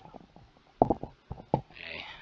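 Three short, dull knocks, one about a second in and two more close together near the end.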